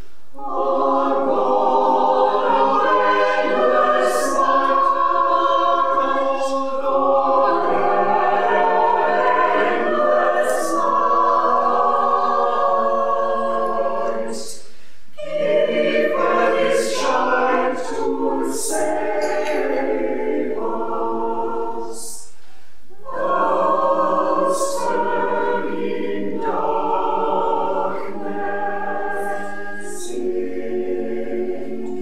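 Church choir of men and women singing a carol, in long phrases with brief breath pauses about halfway through and again about three-quarters of the way through.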